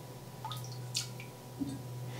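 A few faint drips and small ticks as lactic acid is squeezed from a pipette into wort in a stainless steel brewing kettle, over a low steady hum.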